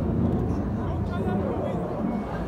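Steady low outdoor rumble with faint voices of nearby spectators.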